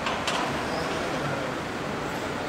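Steady outdoor city street noise, with traffic rumble underneath and a single short click about a quarter second in.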